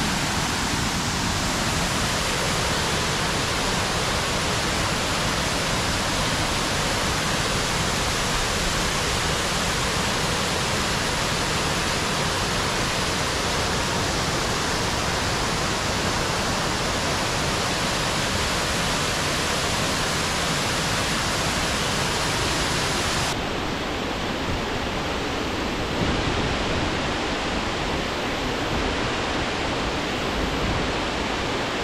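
Crum Creek Falls running high after heavy rain: a steady, full rush of water pouring over the falls. About three-quarters of the way through, the sound turns duller, with less hiss.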